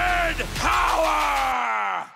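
Men yelling together, several voices at different pitches, ending in one long yell that falls in pitch and fades out near the end. Beneath it runs a low rumble that cuts off about a second and a half in.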